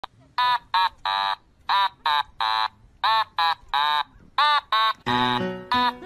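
Husky-type dog vocalizing in a repeated three-part call, two short calls and a longer one, four times over. Background music comes in near the end.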